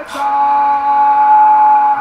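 A man's voice holding one long, loud note at a steady pitch, a drawn-out goal shout.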